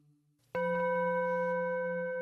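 A steady held drone tone that starts suddenly about half a second in, after a moment of silence, and holds level without fading; it is the accompaniment to a Pali devotional chant.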